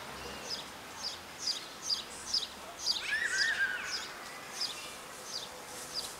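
Small birds chirping repeatedly outdoors, short high chirps coming about two a second, with a brief lower warbling call about three seconds in.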